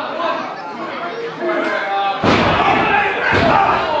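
Crowd voices in a hall, then a little past halfway a loud slam on the wrestling ring, followed by a second thud about a second later.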